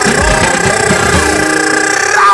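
Live band holding a sustained final chord, with brass sounding the held notes over drum hits. The drum hits stop about three quarters of the way through while the chord rings on.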